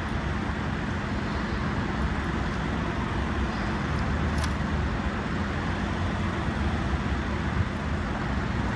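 Steady urban street noise: a continuous low rumble of road traffic.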